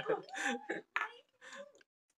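Short, quiet vocal sounds from a person, like clearing the throat or murmuring, with a few faint sharp clicks in between.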